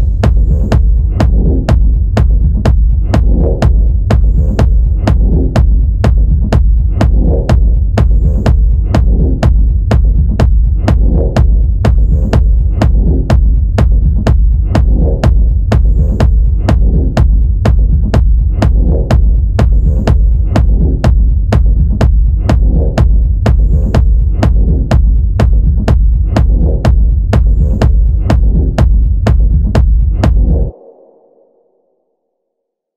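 Closing section of a techno track: a steady four-on-the-floor kick drum, about two beats a second, over a deep sustained bass hum, with sparse faint high blips.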